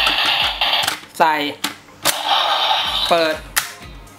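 Electronic sound effects and a looping standby tune from a DX Shotriser toy gun, with several sharp plastic clicks as a Progrise Key is slotted into it and opened.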